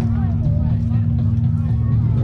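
Indistinct voices of people talking over a steady low hum.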